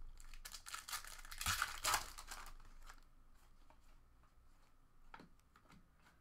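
Foil trading-card pack wrapper crinkling and tearing as it is handled, over the first two and a half seconds, with a faint click a little after five seconds in.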